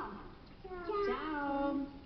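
A high voice in one drawn-out call, a little over a second long, falling in pitch, with a meow-like sound.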